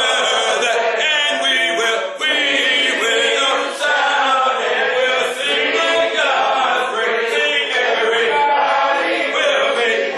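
Congregation singing a hymn a cappella, many voices together in sustained notes with no instruments.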